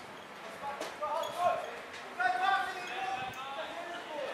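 Several voices shouting out across an open football ground during play, with one long drawn-out call held for about a second in the middle.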